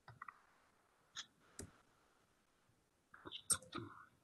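A few faint, scattered clicks, a couple near the start, two around the middle and a small cluster near the end, with near silence between them.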